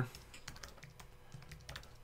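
Typing on a computer keyboard: a run of soft, irregular key clicks.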